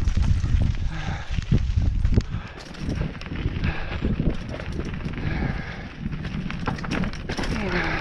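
Hardtail mountain bike rolling down a rocky trail: tyres rumbling and knocking over rocks and gravel, with the bike rattling. The rumble is heaviest for the first two seconds or so, then it turns to lighter, scattered clatter.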